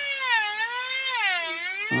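Handheld rotary carving tool with a diamond bit whining as it cuts into the wood, its pitch dipping and recovering twice as the bit bites in.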